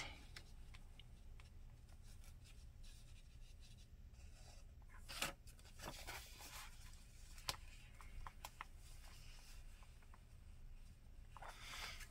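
Near silence with faint paper rustles and small clicks as washi tape is pressed and smoothed along the edge of journal pages, with a slightly louder tick about five seconds in and another a couple of seconds later.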